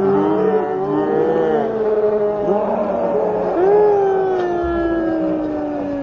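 Several men's voices shouting and calling out over each other, then one long drawn-out call that falls slowly in pitch over the last couple of seconds.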